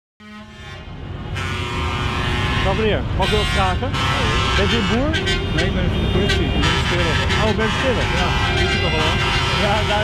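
Several vehicle horns sounding together in a steady, unchanging chord, fading in from silence over the first couple of seconds, with people's voices over them.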